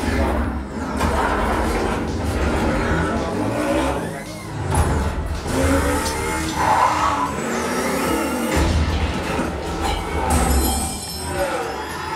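A film soundtrack played loud through a Harman Kardon home-theatre surround system: music over strong, steady deep bass.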